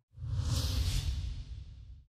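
Whoosh sound effect of a news channel's closing logo ident: a rushing hiss over a low rumble that swells in just after the start and slowly fades away.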